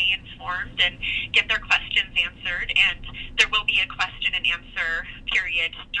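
A woman speaking over a telephone line, her voice thin and narrow-band, with one sharp click a little past the middle.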